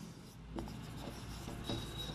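Marker pen writing on a whiteboard: faint scratchy strokes as letters are written. A thin steady high tone comes in near the end.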